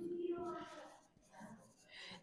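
Felt-tip marker writing on a whiteboard, faint, mostly in the first second with a short stroke again near the end.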